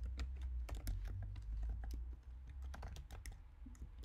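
Typing on a computer keyboard: a quick, uneven run of key clicks over a low, steady hum.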